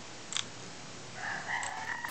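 A steady faint hiss with a single computer mouse click about a third of a second in. In the last second a faint drawn-out call rises in the background.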